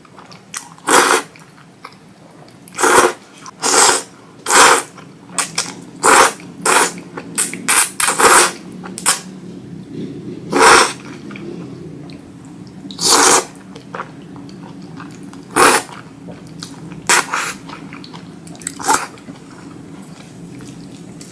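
Spicy ramen noodles being slurped up close, in more than a dozen separate short, noisy slurps. A few are longer and louder than the rest.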